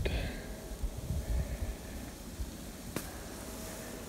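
Quiet outdoor ambience: an uneven low rumble on the microphone with a faint steady hum, and a single sharp click about three seconds in.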